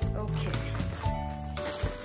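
Background music with sustained low notes, over which a thin plastic carrier bag rustles and crinkles in short bursts as hands pull it open.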